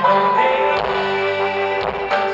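Live band playing a song: a man singing lead over electric guitar, bass guitar and drums.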